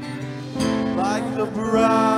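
Acoustic guitar strummed: a chord rings, a new strum comes in about half a second in, and a man's voice starts to sing over it in the second half.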